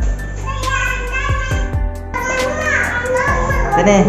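Background music: a song with a singing voice over a drum beat.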